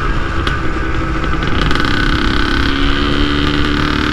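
Yamaha DT 180's single-cylinder two-stroke engine running steadily as the motorcycle cruises, heard from the rider's seat.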